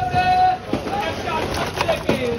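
People's voices and calls among the fish stalls, with one drawn-out call held steady at the start and other voices overlapping after it.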